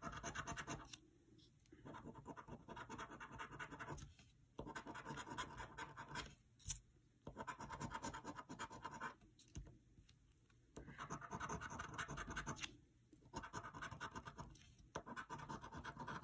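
A coin scraping the scratch-off coating from a paper lottery ticket, in repeated bursts of quick back-and-forth strokes of a second or two each, with short pauses as it moves from spot to spot. One sharp tick about halfway through.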